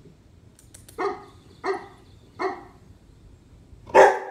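Bernese mountain dog puppy giving three short barks, evenly spaced, with a louder bark starting right at the end.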